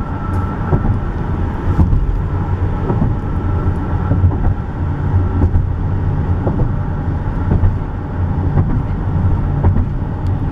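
Car driving at highway speed, heard from inside the cabin: a steady low rumble of tyres and engine, with a faint steady whine through the first half and a few light knocks.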